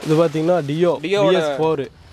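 Speech: a voice talking, with a brief pause just before the end.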